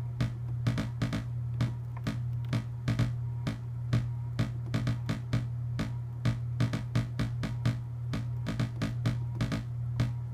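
Modular synth blips: a Harvestman Phase Displacement Oscillator gated through a VCA by an Intellijel Quadra envelope, triggered by Zorlon Cannon gate-sequencer patterns stepping on a clock. The result is short percussive notes several times a second in an uneven repeating rhythm, over a steady low hum.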